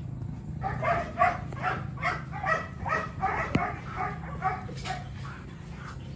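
A Belgian Malinois giving a rapid run of short yelps, about three or four a second, for several seconds during a mating attempt, over a steady low hum.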